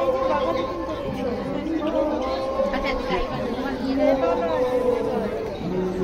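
Several people talking at once: overlapping chatter of a small crowd.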